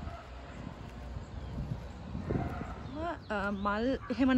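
Footsteps on paving stones, soft irregular thumps from a pair walking, with sandals on at least one pair of feet. About three seconds in, a person's voice comes in with long held, bending tones.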